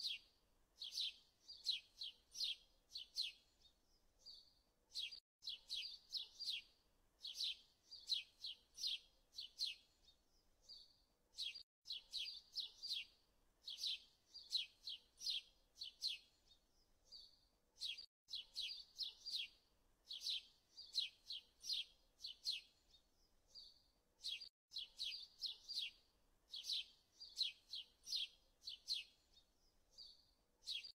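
Small birds chirping in quick, high, repeated calls. The same stretch of chirping repeats about every six and a half seconds, like a looped recording.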